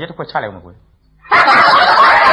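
A brief line of speech, then a loud burst of laughter starting a little past halfway and continuing.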